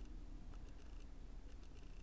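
Faint room tone: a quiet, steady low hum with no distinct event.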